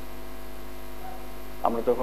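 Steady electrical mains hum in the recording, an even drone with no change in pitch or level.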